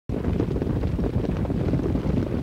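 Steady low rumbling background noise that starts abruptly at the very beginning.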